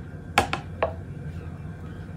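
A few short light clicks and taps from handling things on the worktable, the sharpest about half a second in, over a low steady hum.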